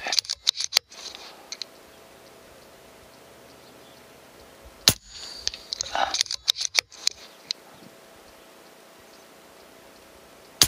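BRK Ghost .22 PCP air rifle firing a single shot about five seconds in, a sharp pop. Bursts of quick metallic clicks from the rifle's action being cycled to chamber the next pellet follow about a second after the shot, and also fall right at the start, after an earlier shot.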